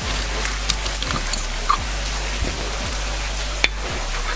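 A key turning in the lock of a glass enclosure door, with keys jingling and small metal clicks, then one sharp click near the end as the lock comes free. A steady low hum and hiss sit underneath.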